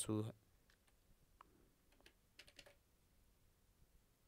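Computer keyboard keys tapped a few times, faint and scattered: a single tap, then a short cluster of keystrokes as text is typed.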